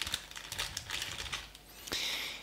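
A quick run of light clicks and taps from hands picking up and handling a small plastic toy figure and its packaging.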